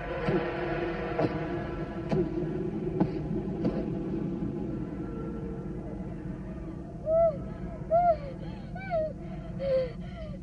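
A steady low drone with a few faint clicks, then, from about seven seconds in, a woman's short pained cries, four of them about a second apart, each rising then falling in pitch.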